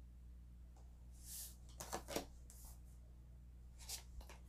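Oracle cards being handled: a soft slide of card against card about a second in, then a few light flicks and taps of cards, over a faint steady hum.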